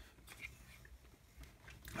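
Near silence: room tone, with a faint tap or two early on as the plastic Lego model is handled.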